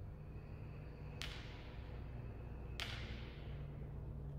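Two sharp clicks about a second and a half apart, each trailing off in the echo of a large hall, over a low steady hum.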